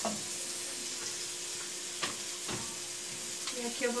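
Diced calabresa sausage and chopped garlic frying in a little oil in an aluminium pot, with a steady sizzle, browning the garlic. A couple of soft knocks come about two seconds in.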